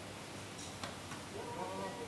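Quiet room with a few faint clicks, then a brief voice in the background near the end.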